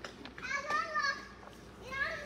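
A child's voice calling out in play without clear words, twice: a high, wavering call about half a second in, and another starting near the end.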